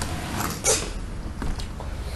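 Small plastic Lego motorbike moved over a wooden tabletop: a few short scrapes and knocks, the clearest a little under a second in.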